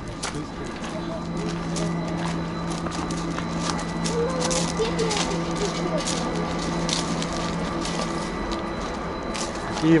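Steady low hum of the chairlift's drive machinery at the base station, with footsteps crunching on gravel.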